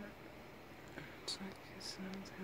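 A person whispering faintly close to the phone's microphone, with two short hisses in the second half.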